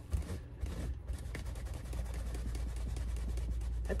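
Scrubbing on a purse: a continuous run of quick, scratchy rubbing strokes.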